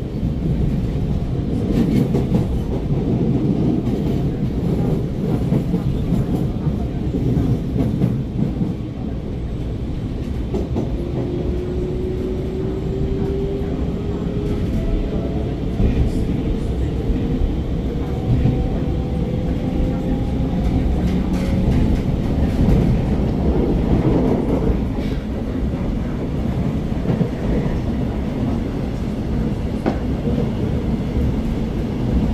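Alstom MOVIA R151 metro train heard from inside the car: steady wheel-on-rail running noise, with the MITRAC SiC-VVVF traction motors' whine rising slowly in pitch from about ten seconds in to about twenty seconds in as the train gathers speed.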